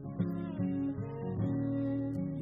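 Acoustic guitar strummed in a steady rhythm, with a violin holding and sliding between long notes over it; no voice.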